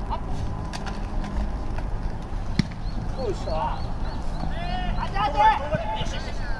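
A single sharp thud of an American football being punted, about two and a half seconds in, over steady open-air background noise, followed by players' shouts and calls.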